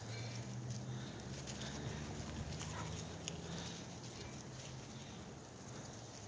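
Footsteps and goats' hooves clicking on the ground during a walk, with a faint steady low hum underneath that fades after about four seconds.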